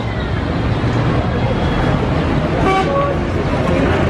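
Road traffic running steadily close by, with the low rumble of vehicle engines. About three seconds in comes a brief flat horn toot.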